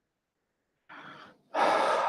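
A man's breathing into a close microphone: silence for about a second, then a faint breath and, near the end, a louder intake of breath.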